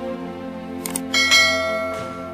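Subscribe-button animation sound effects over background music: a short click just under a second in, then a bright bell ding that rings on and fades.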